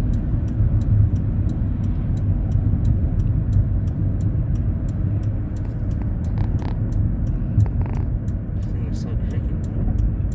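Inside the cabin of a Chrysler sedan driving at road speed: a steady low rumble of engine and tyres on the road. A faint, fast, even ticking runs over it.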